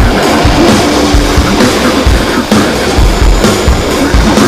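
Loud, dense noise-rock/metal band music, with a heavy low drum hit about twice a second under a full wall of guitar.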